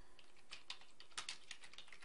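Faint typing on a computer keyboard: an irregular run of short keystroke clicks.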